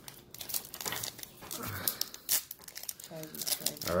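Foil trading-card booster pack wrapper crinkling and tearing as it is ripped open by hand, a run of many short sharp crackles.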